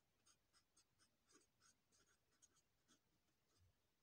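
Very faint scratching of a pen writing on lined notebook paper, a quick series of short strokes as a word is written out.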